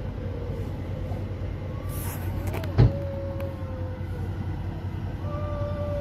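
Steady low rumble of a moving vehicle heard from inside it, with a faint hum that drifts slightly in pitch. A single sharp thump about halfway through.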